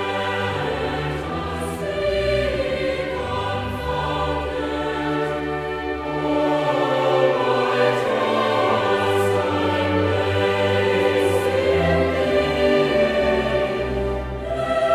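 Choral music with orchestral accompaniment: voices singing long, slow, held chords.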